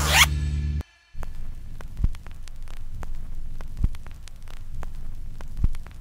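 Background jazz music stops about a second in. After a brief silence comes a steady hum and crackle of recording noise, with a louder pop about every two seconds.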